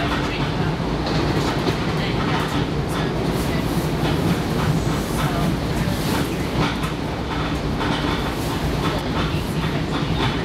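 Long Island Rail Road commuter train running at speed, heard inside the passenger car: a steady rumble of wheels on track with a low hum and scattered clicks and rattles.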